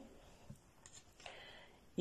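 Very quiet room tone in a pause, with a single faint click about half a second in and a brief soft hiss a little after a second in.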